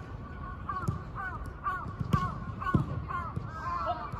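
A crow cawing over and over in a quick run of short calls, with a few dull thumps underneath.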